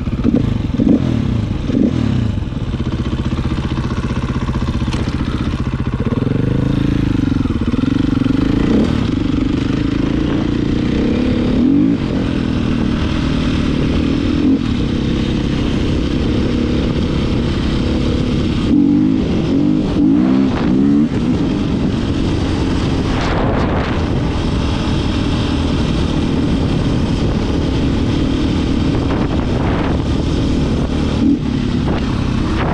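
A 450 dirt bike's single-cylinder four-stroke engine running under way, its revs rising and falling several times with the throttle.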